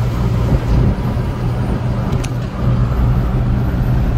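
Truck cab interior at highway cruising speed: a steady engine drone with a constant low hum under road and tyre noise.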